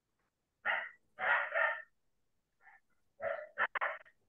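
A dog barking in short bursts, in three groups, heard over an online video call.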